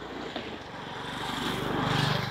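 A motor's low, pulsing drone that grows louder to a peak near the end, like an engine passing close by.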